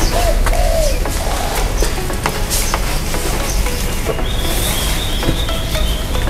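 Dark Pasir Malang sand poured from a woven sack onto a tarp: a steady grainy rush with scattered ticks of falling grains. A bird calls briefly near the start, and a thin high note sounds from about four seconds in.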